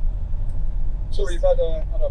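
Steady, loud low rumble of road and engine noise inside the cab of an Autotrail Scout motorhome on the move. A man's voice comes in over it about a second in.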